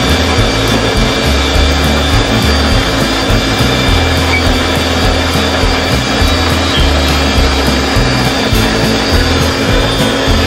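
Background music with a changing bass line over an electric mixer-grinder running steadily while blending fruit juice.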